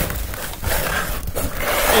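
Clear plastic hamster exercise ball rolling and rattling against the floor as it is nudged along, with a few light knocks.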